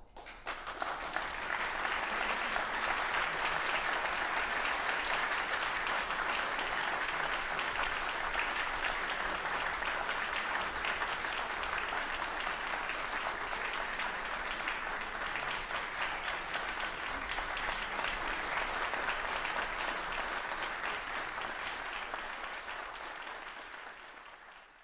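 Audience applauding, building up within the first couple of seconds, then holding steady and easing slightly near the end.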